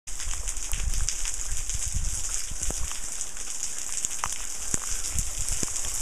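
Spring water showering down from an overhanging rock cliff as a steady patter of falling drops, with many separate drop splashes on the rock.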